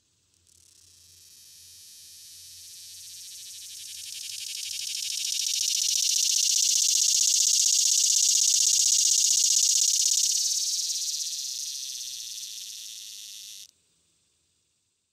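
Male morning or swamp cicada (Neotibicen tibicen) singing a high-pitched song that starts faintly, swells to a strong crescendo in the middle and fades again. The song stops abruptly near the end.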